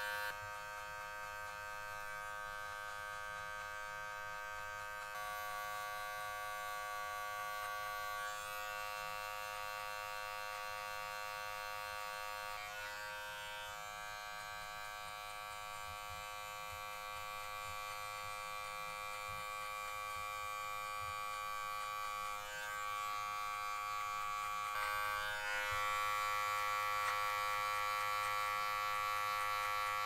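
Cordless electric hair clipper buzzing steadily as it cuts a short fade on the back and sides of the head. Its tone shifts slightly every few seconds as the blade is worked through the hair.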